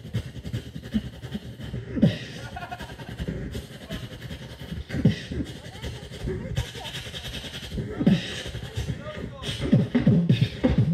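A beatboxer performing into a microphone over a PA: deep bass hits that fall in pitch, the loudest about two, five and eight seconds in, over quicker clicks and hi-hat hisses.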